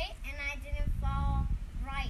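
A young girl singing in a sing-song voice, holding some notes steady, over a low rumbling noise that swells about a second in.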